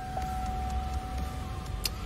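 Steady low hum with a thin, even whine held at one pitch over it, and a fainter tone that slowly falls in pitch. One or two faint clicks come near the end.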